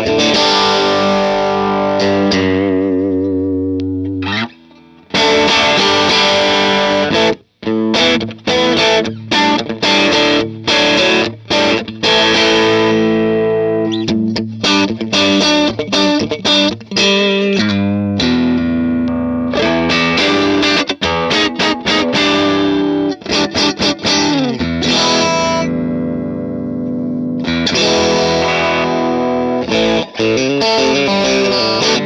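Electric guitar played through a Divided by 13 FTR 37 amp on its second, more British-voiced channel, with an overdriven tone. Ringing chords give way to a run of short, choppy chord stabs with gaps between them, then longer held chords near the end.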